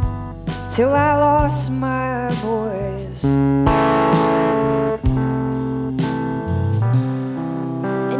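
A live band of guitar, bass guitar and drums playing a song, with drum hits throughout.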